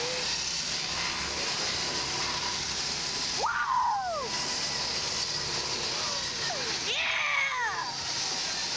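Rushing wind blowing over the onboard microphone of a Slingshot reverse-bungee ride capsule as it swings, a steady hiss throughout. A short vocal cry rises and falls in pitch about three and a half seconds in, and a second one comes near the end.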